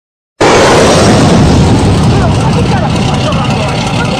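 Loud, rough running noise of a fishing boat's engine at sea, cutting in abruptly about half a second in and easing slightly after.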